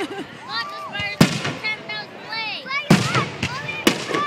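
Aerial fireworks display: three loud shell bursts, about a second in, near three seconds and just before the end, with high, rising-and-falling gliding sounds between them.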